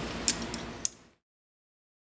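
Three short, sharp clicks over low room noise, after which the sound cuts off abruptly to silence a little after a second in.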